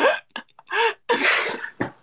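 Laughter: several short, uneven bursts of voice and breath.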